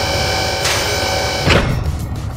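Cartoon sound effects for a wooden toy car carrier's top ramp being raised and locked, over a steady background drone. There is a short rush of noise about two-thirds of a second in. A single heavy clunk comes about a second and a half in as the ramp locks into place.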